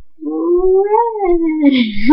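A young girl's voice in one long wordless call, rising in pitch and then sliding down, with a breathy rush near the end.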